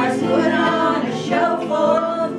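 Small choir of men and women singing a song together in harmony.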